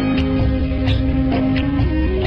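Instrumental interlude of a Bollywood song's karaoke backing track: one long held note over a steady bass line with drum hits. A new melody line comes in near the end.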